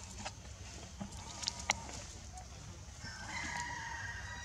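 A rooster crowing: one drawn-out call that starts about three seconds in, steps up in pitch and holds. A few light ticks and rustles come before it, the sharpest about a second and a half in.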